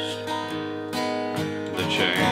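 Steel-string acoustic guitar strummed in a country song, chords ringing between a few strokes.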